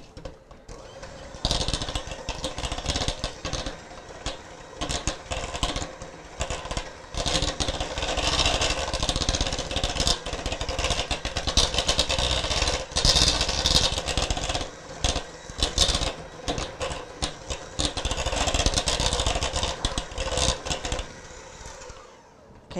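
Electric hand mixer running with its beaters in a bowl of cake batter, with an irregular clatter of beaters against the bowl. It starts about a second and a half in and stops near the end.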